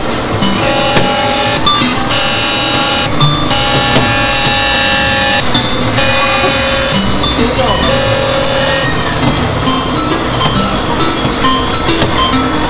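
Electronic jingle from a coin-operated kiddie rocket ride, a simple tune of held notes that change every half-second or so and repeat, with voices in the background.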